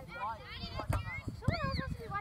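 High-pitched shouts and calls from youth soccer players and sideline spectators, several voices overlapping, with the loudest rising and falling calls near the end. Underneath is an uneven low rumble of wind on the microphone.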